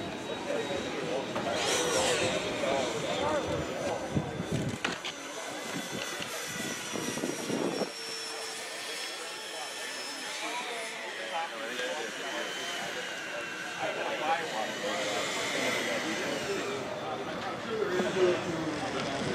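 Electric ducted fan of a radio-controlled scale airliner jet whining as it flies past, the whine sliding slowly down in pitch.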